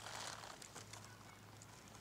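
Near quiet: a steady low hum, with a soft hiss in the first half second.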